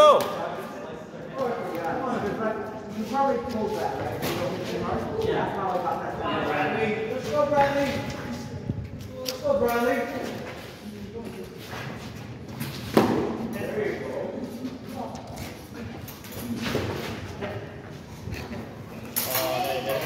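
Black synthetic training swords clacking and knocking together in a sparring bout, with a sharp strike about two-thirds of the way through. Indistinct voices and laughter from the people nearby run underneath.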